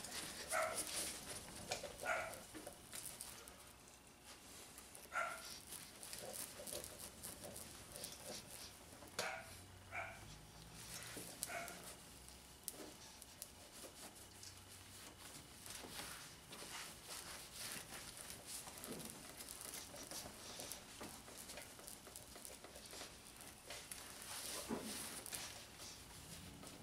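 A dog barking faintly a handful of times, short separate barks mostly in the first half, over the soft steady rub of a microfiber towel buffing a plastic headlight lens.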